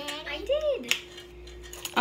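Metal measuring spoons clinking against a stainless steel mixing bowl, with a couple of light clicks about a second in and near the end. A child's voice makes two brief sounds in the first second.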